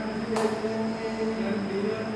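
A steady drone of sustained tones that waver slightly in pitch, with a sharp click about half a second in.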